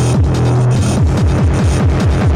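Hardcore gabber / industrial electronic music: kick drums hitting about four times a second, each dropping in pitch, over a held low bass tone that cuts off a little under a second in.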